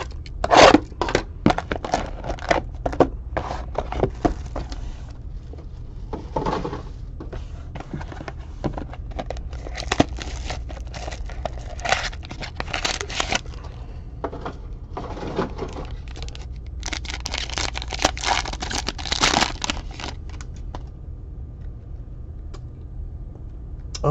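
Plastic wrappers of trading-card packs being torn open and crinkled, with cards shuffled and handled: irregular crackling and tearing that thins out over the last few seconds.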